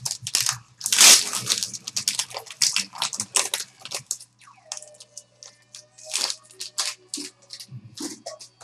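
A trading-card pack wrapper being torn open and crumpled by hand: a dense run of crackling rips for the first four seconds, loudest about a second in, then sparser rustles as the cards come out. Faint held tones from background music sit under the second half.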